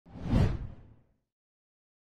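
Intro whoosh sound effect: a single swish with a deep low end that swells and fades out within about a second.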